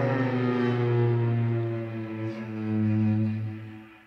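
Two cellos and a violin bowing long held notes together. The chord shifts about halfway through, then the strings fade away near the end.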